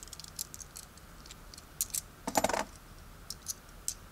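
Kennedy half dollars clicking against one another as they are slid off a stack in the hand and turned over one at a time: scattered light clicks, with a short louder clatter a little past halfway and a few more clicks near the end.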